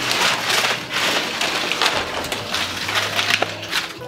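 Dry banana leaves rustling and crackling as they are pulled and handled, a dense crisp rustle that goes on without a break.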